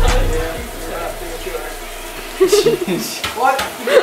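A sponge scrubbing a metal baking sheet at a kitchen sink, a steady hissing scrub. Voices come in about halfway through.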